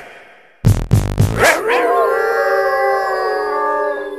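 Dog howl in a film song's music: a call that rises about a second and a half in and settles into one long held note, after a few heavy beats.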